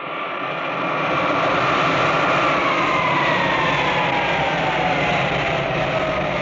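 Jet airliner engines running, a loud steady rush with a whine that falls slowly in pitch throughout.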